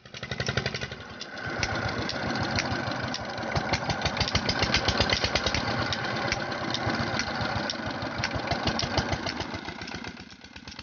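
Red single-cylinder stationary diesel engine running steadily with a rapid, even run of firing knocks. It belt-drives an irrigation water pump.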